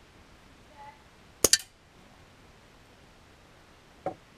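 Daisy PowerLine 901 pneumatic air rifle firing one pellet: a sharp double crack about one and a half seconds in, with a faint short squeak just before it and a light click near the end.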